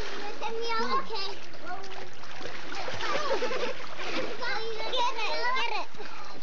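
Children's high voices calling and chattering over water splashing in a swimming pool, continuous throughout.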